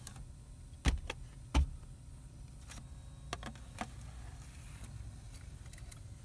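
A DVD being taken by hand from the ejected disc slot of a Pioneer AVH-4200NEX head unit, its screen tilted down: two sharp clicks about a second in, then a few light plastic ticks over a low steady background hum.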